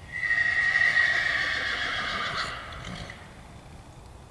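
A horse whinnying: one loud, high call lasting nearly three seconds, starting strong and trailing off.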